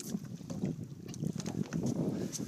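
Choppy sea water lapping against a boat's hull, with wind rumbling on the microphone.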